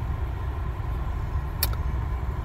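Mazda RX-8's rotary engine, fitted with an aftermarket exhaust, idling as a steady low rumble heard inside the cabin. A single sharp click of a head-unit button comes about one and a half seconds in.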